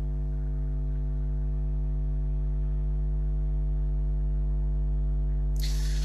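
Steady electrical mains hum in the recording: a low buzz made of several evenly spaced steady tones. There is a short breath-like hiss near the end.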